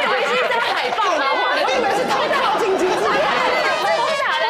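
Several people laughing and talking over one another at once.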